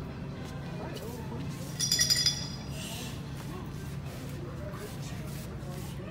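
A small bell jingling in one short burst of high metallic ringing, about two seconds in, over a steady low hum.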